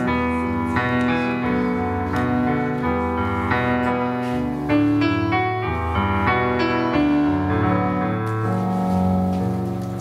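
Piano introduction played on a stage keyboard: a steady flow of sustained chords with a melody over them, leading into a song.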